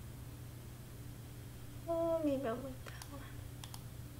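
A woman's short wordless "mm" hum, falling in pitch, about halfway through, followed by a few faint computer mouse clicks near the end, over a steady low background hum.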